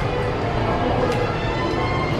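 Music playing steadily in the background.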